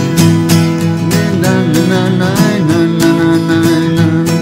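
Steel-string acoustic guitar strummed in a steady rhythm, with a wavering melody line sliding over the chords from about a second in to nearly three seconds in.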